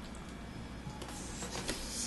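Quiet handling noise of a plexiglass sheet being tilted and moved by hand: a soft rustling hiss that starts about a second in, with a couple of light taps.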